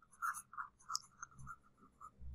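Faint stylus strokes scratching on a tablet writing surface as a word is handwritten: about half a dozen short, separate scratches.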